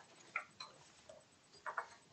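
Quiet room tone with a few faint, short clicks at uneven intervals.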